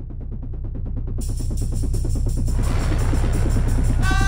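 Background music: a fast, even pulsing beat fading in and steadily growing louder, with a rising swell building in the second half.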